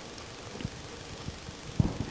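Faint low background hum with a few soft faint clicks, and a slightly louder low thump near the end.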